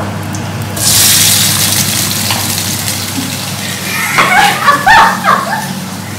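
Chopped tomatoes, green chili and ginger hitting hot oil in a frying pan: a sudden loud sizzle about a second in that then settles into steadier frying. Brief voices come in near the end.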